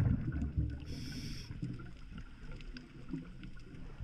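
Muffled low rumble of water, as picked up by a camera filming underwater, slowly fading, with a brief high hiss about a second in.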